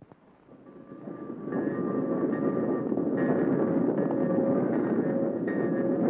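Steam locomotive blowing off steam, a steady rushing hiss that swells in over the first second and a half, with a chord of several held tones over it.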